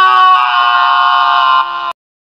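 A person's long, high-pitched held scream on one steady note that sinks slightly in pitch, cut off abruptly near the end.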